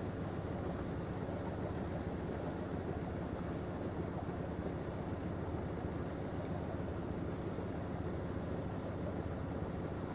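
Steady hum of a Southerly 95 yacht's inboard engine running at an even speed while motoring under power, with a low drone that stays constant throughout.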